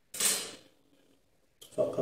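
A metal strip set down on a stone countertop: one short clatter just after the start that dies away within about half a second. A man's voice comes in near the end.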